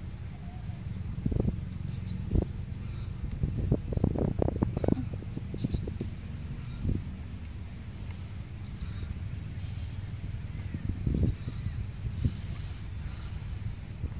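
Steady low rumble of outdoor background noise with scattered dull knocks, most of them in a cluster about four to five seconds in and another about eleven seconds in.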